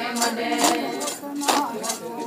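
Group of Adi women singing a Ponung dance song, cut by sharp metallic jingles about twice a second that keep the dance beat, typical of the leader's yoksha, a sword rattle hung with metal jingles.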